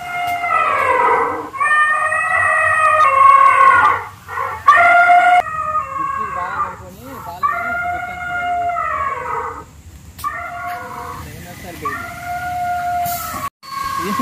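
Animatronic dinosaurs' recorded roars and calls played through their speakers: a string of about seven long, howling calls, each a second or two, rising and falling in pitch with short gaps between.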